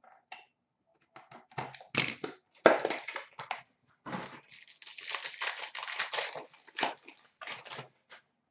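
Trading-card packaging being handled and torn open by hand: irregular crinkling and tearing of wrappers and cardboard, with a longer continuous rustle between about four and six and a half seconds in.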